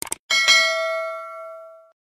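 Sound effect of a subscribe-button animation: a quick double mouse click, then a notification-bell ding that rings and dies away over about a second and a half.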